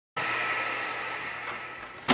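Steady background room noise: an even hiss with a faint hum, starting just after a brief silence and easing slightly toward the end.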